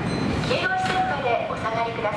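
Voices talking over the steady low running noise of an electric train at a station platform.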